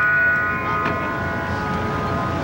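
A 36-inch tempered steel saw blade ringing after being struck: several clear tones sound together and slowly fade away.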